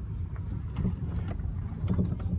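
Low, steady rumble of a car's engine and tyres heard from inside while it drives slowly along a street, with a few faint clicks.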